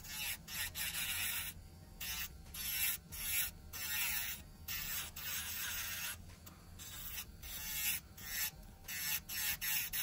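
Pink handheld electric nail drill (e-file) with a metal barrel bit grinding an acrylic nail extension. A steady motor hum runs under bursts of grinding that break off and resume about once a second as the bit touches and leaves the nail.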